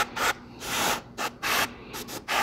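Airbrush spraying black primer in short bursts of hissing air, about four bursts in two seconds, each one a light touch of the trigger.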